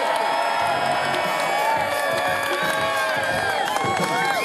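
Crowd cheering and whooping, many voices shouting at once over a noisy wash.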